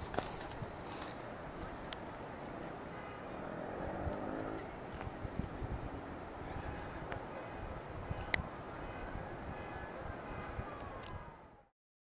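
Outdoor hillside ambience: a steady background hiss with a few sharp clicks, and twice a short, rapid high-pitched trill. The sound stops abruptly shortly before the end.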